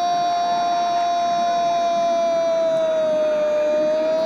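Brazilian TV football commentator's long drawn-out goal cry, 'gooool', held as one unbroken shouted note. The pitch sags slightly and rises again near the end.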